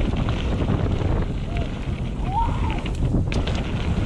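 Wind buffeting the camera microphone over the rumble of mountain bike tyres rolling fast down a dirt trail. A short, fainter "woo" shout rises and falls about two and a half seconds in.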